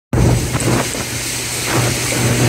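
Tour boat's engines running with a steady low hum, mixed with wind noise on the microphone.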